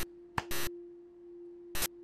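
A faint steady tone, like a pure hum, with a few short sharp noisy bursts: one just after the start, two about half a second in, and one near the end.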